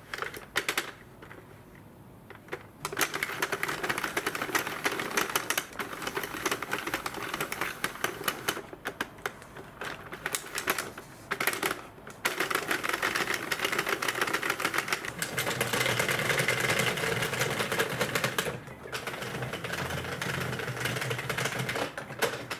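A Sentro 48-needle plastic knitting machine being cranked in panel mode: a fast, dense plastic clicking and clattering as the needles cycle. There are a few separate clicks at first; the steady run starts about three seconds in and is broken by a few brief pauses.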